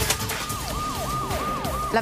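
Siren-like sound effect closing the news programme's bumper: a tone that repeatedly jumps up and slides down in pitch, about three times a second, as the electronic bumper music fades out.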